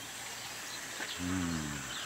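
A brief, drawn-out vocal sound from a person about a second in, falling in pitch and lasting under a second. Faint, short high chirps sound now and then in the background.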